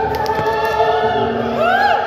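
A woman singing into a microphone, amplified through a portable speaker, with other voices singing along. Long held notes, and a rising-then-falling slide near the end.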